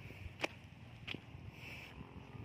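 Footsteps on dry, stony dirt: short crunching steps at an even walking pace, roughly one every two-thirds of a second.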